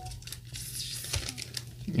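Faint crinkling with a few light clicks as a clear plastic phone-case frame and its protective film are handled.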